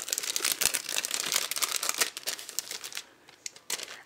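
Crinkling and rustling of clear plastic packaging as a packet of sticker sheets is handled and opened, easing off about three seconds in.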